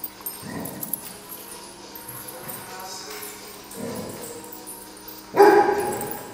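Dogs playing together, with short vocal noises from them, then one loud bark about five seconds in.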